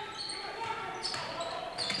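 Faint basketball game sounds on a gym floor: a ball being dribbled and passed, in a large, echoing hall.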